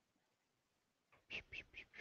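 Near silence: room tone, with a few faint short clicks or mouth sounds near the end.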